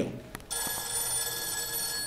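A steady, high ringing tone made of several pitches sounding together. It starts suddenly about half a second in, just after a faint click, and holds at an even level.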